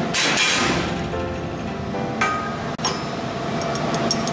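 Metallic clinks in a workshop around freshly plasma-cut steel plate. A burst of hiss comes at the start, with steady tones in the background that change pitch a couple of times.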